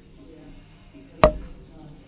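A single sharp knock about a second in, with a brief ringing tail.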